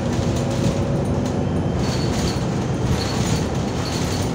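Steady low engine drone and road rumble heard from inside the passenger cabin of a moving bus.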